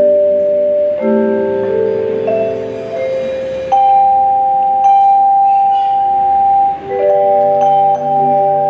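Marimbas playing a slow passage of long held chords that change every one to three seconds, with a high note held for about three seconds in the middle.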